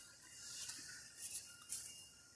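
Faint background noise with a few soft, brief rustles.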